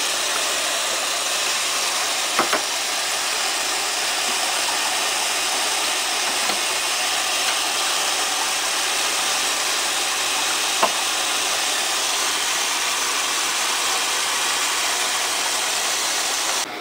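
Kitchen faucet running steadily into a steel pot in the sink, a constant splashing hiss of water, with two brief knocks about two and a half and eleven seconds in.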